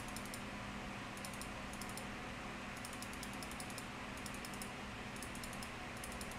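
Faint computer clicking in short clusters about once a second, over a low steady hum.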